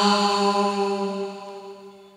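A man's unaccompanied singing voice holding one long, steady note that fades out over about two seconds at the end of a sung phrase.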